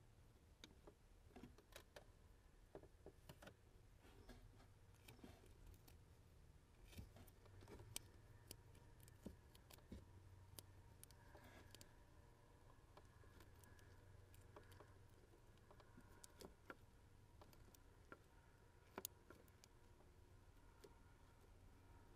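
Near silence, with faint scattered clicks and small rustles of hands handling wires and wrapping electrical tape around a wire splice.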